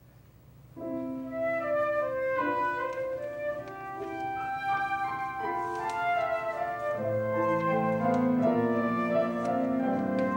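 Instrumental introduction of a sacred choral anthem begins about a second in, with a melody over keyboard-like accompaniment; lower notes join about seven seconds in.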